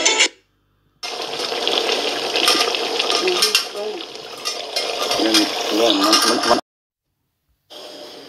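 Wooden spoon stirring soup in a stainless steel pot: scraping and light knocks of the spoon against the pot, with faint voices under it. It starts about a second in and cuts off suddenly after about five and a half seconds.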